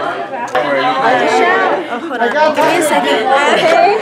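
Several people talking over one another: lively party chatter.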